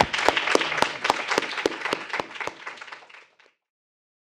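Audience applause, a haze of clapping with some loud individual claps standing out, thinning and fading until it cuts off to silence about three and a half seconds in.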